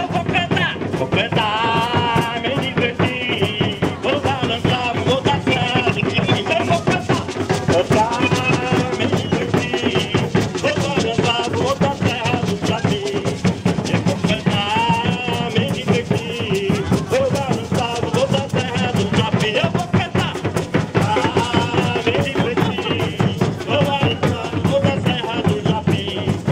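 Live samba de bumbo: bass drums and snare drums beat a steady, driving rhythm while voices sing a refrain over it.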